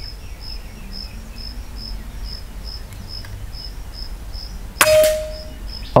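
A single air rifle shot about five seconds in: a sharp crack followed by a short metallic ring. Under it an insect chirps steadily, about two or three chirps a second.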